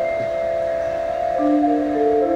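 Marimbas and mallet percussion holding a sustained chord, with a new lower note coming in about one and a half seconds in.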